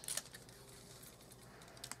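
Clear sticky tape being handled and pressed onto wrapping paper: a few faint crackles and clicks just after the start and again near the end.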